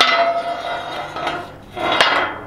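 A steel pipe clanging against the metal rails of a pipe-panel cattle pen. It strikes at the start and rings for about a second. Near the end it scrapes and clanks against the rails again.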